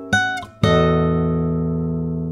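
Solo acoustic guitar music: a short plucked note, then a low chord struck about half a second in that rings on and slowly dies away.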